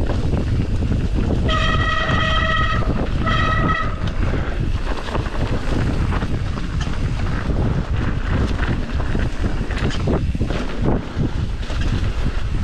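Wind buffeting the microphone over the rumble of a mountain bike rolling on a leafy dirt trail. Two high, steady squeals on the same pitch come in between about one and a half and four seconds in, typical of disc brakes squealing under braking.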